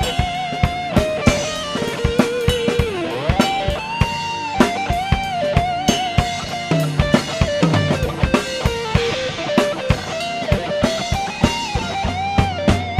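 Electric guitar playing a lead solo with sustained notes, string bends and slides, over a drum kit keeping a steady rock beat.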